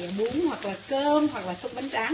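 Thinly sliced wild boar and onions sizzling in a pan over high heat as they are stirred with chopsticks and a spatula. A woman's voice talks over the frying.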